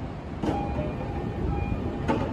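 Passenger doors of a JR East E531-series commuter train sliding shut at the platform: a clunk about half a second in as they start to close, with faint thin tones over a steady low rumble.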